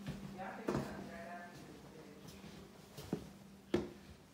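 A person's voice talking faintly in a room, with three sharp knocks, the loudest near the end.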